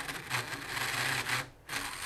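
Slot car's small electric motor running on track power, its rear tires spinning against the tire truer's abrasive sanding pad with a rough scuffing sound. It cuts out briefly about one and a half seconds in, then starts again.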